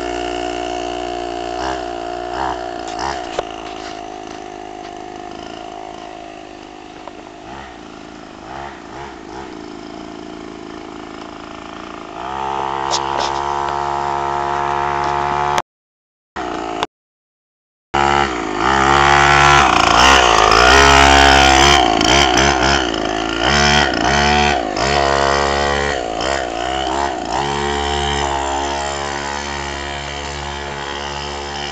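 49cc mini dirt bike engine running under throttle, its pitch rising and falling as the rider speeds up and eases off. It fades as the bike rides away, then grows loud as it comes back close. The sound cuts out completely for about two seconds midway.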